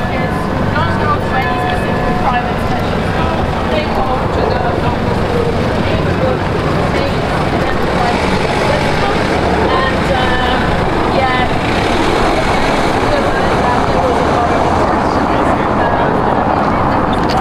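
Busy city-square ambience: chatter from passers-by in the crowd over a steady rumble of traffic, with a car driving past.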